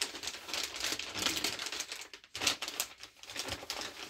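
Plastic packaging bags crinkling and rustling as they are rummaged through for loose screws, with small clicks and knocks mixed in.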